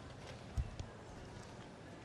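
Quiet indoor arena background with one soft, low knock about half a second in.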